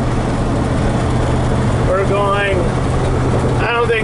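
Steady in-cab drone of a 1941 Ford pickup with a 350 cubic-inch V8 and automatic transmission, mixed with road noise while cruising at about 50 mph.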